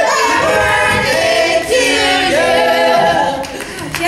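Several cast members singing together in harmony, holding long notes, with the singing easing off near the end.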